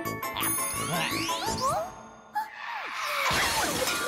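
Cartoon music score with tinkling, dings and rising whistle-like glides, a brief lull with a sharp hit about halfway, then a dense clattering crash of plates building near the end.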